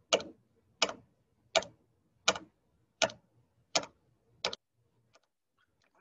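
A sound effect of seven evenly spaced sharp taps, about three every two seconds, each with a lighter after-tap, stopping near the two-thirds mark.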